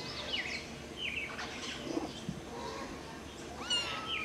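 Short, high chirping calls repeated several times, falling in pitch, and a longer pitched call near the end that rises and then holds steady.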